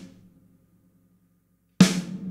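Snare drum sample played through Valhalla VintageVerb with the reverb's high cut set to 100 Hz, so that only a short, dark, low reverb tail is left. The tail of one hit dies away in the first half second, and a second sharp snare crack lands near the end, followed by a low ring.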